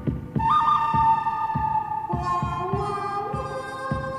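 Background music: long held notes over a steady low beat.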